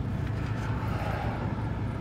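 Semi-truck diesel engine running, heard from inside the cab as a steady low drone.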